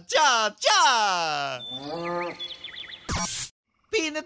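A voice giving two long calls that slide down in pitch, then a lower held note. A short burst of noise follows about three seconds in, and the sound cuts off abruptly.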